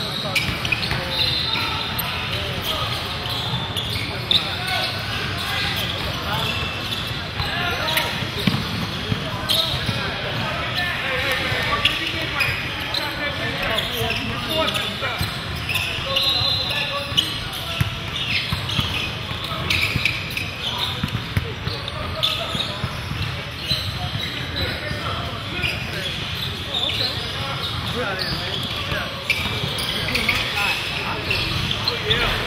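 A basketball being dribbled and bouncing on a hardwood gym floor in live play, many sharp bounces scattered through, over indistinct chatter from players and spectators in a large, echoing gym.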